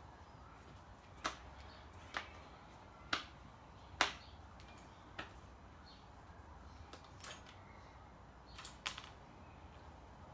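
Sharp metallic clicks, roughly one a second, from a screwdriver being worked on the clamp screws of a trimmer's shaft coupling as they are tightened; a louder double click comes near the end.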